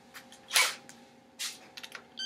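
A few short metallic clicks and knocks as the rocker arms on the cylinder head are handled. The loudest comes about half a second in and another about a second and a half in.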